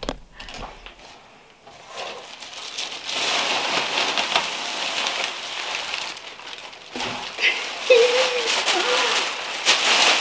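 Plastic wrapping and packing peanuts rustling and crinkling as a plastic-wrapped potted plant is pulled out of a cardboard box. A few scattered crackles at first, then a steady dense rustle from about two seconds in.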